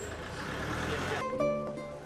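Street noise, like a vehicle going by, for the first second or so. Then background music with plucked guitar notes comes in about halfway through.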